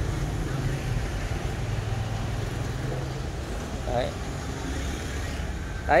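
Street traffic: motor scooters and cars passing on the road, a steady low rumble with one engine's hum fading out about halfway through.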